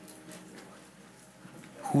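Quiet background music of soft held notes during a pause in speech. A man's voice begins speaking right at the end.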